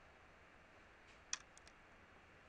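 Near silence broken by a single computer keyboard keystroke click a little past halfway, followed by two faint ticks.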